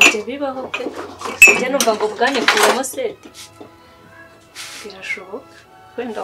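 Dishes and cutlery clinking and clattering as they are handled, with several sharp clatters in the first half and another near the end.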